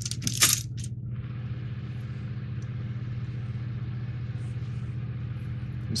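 A clear plastic parts bag crinkling and rattling briefly at the start, then a steady low hum with faint hiss.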